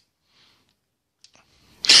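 Near silence with a few faint clicks a little past a second in, then a man starts speaking near the end.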